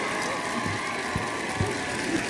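Studio audience applauding over game-show music, with some voices mixed in.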